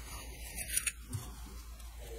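Denim fabric being smoothed and pressed by hand onto sticky wash-away tape: brief rustling, scratchy sounds, loudest just before a second in.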